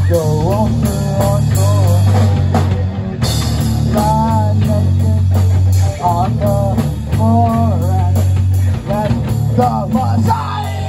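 Live rock band playing: distorted electric guitars, bass and drum kit, with a lead vocal line sung over a heavy, steady low end.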